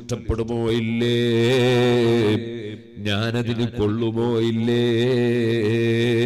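A man's voice chanting in long, held melodic phrases into a public-address microphone, as in a preacher's chanted religious recitation, with a short break near the middle.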